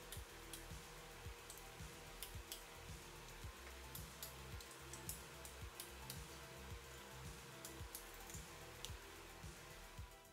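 Faint background music with irregular sharp clicks from a ratchet wrench as the rear-case bolts of a transmission are tightened to torque.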